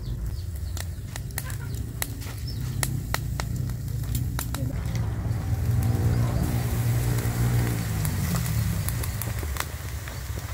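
Charcoal fire crackling with sharp pops under chickens on a wire grill, over a low rumble. About six seconds in, marinade poured from a wok onto the hot chickens adds a sizzling hiss, while a low humming tone runs for a few seconds midway.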